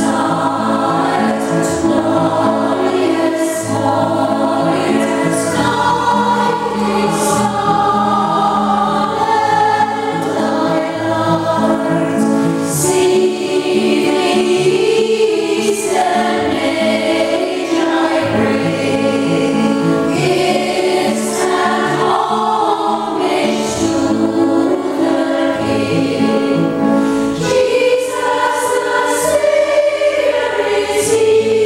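Women's choir singing sustained notes in several-part harmony, with piano accompaniment.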